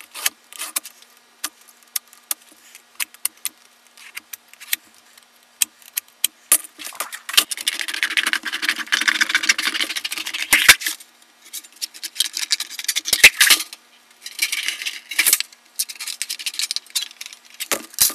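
A metal scribe scratching along sheet metal as lines are traced around a sheet-metal pattern, with scattered clicks and taps of the metal being handled. The longest stretch of scratching runs for about three seconds in the middle, with a shorter one later.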